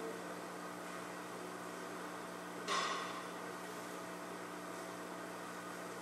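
Steady low electrical hum and hiss from a church's microphone and sound system, with one short soft noise about halfway through.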